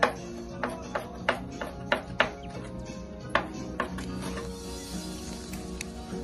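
Kitchen knife chopping cilantro on a cutting board: an uneven run of sharp taps that stops about four seconds in, over steady background music.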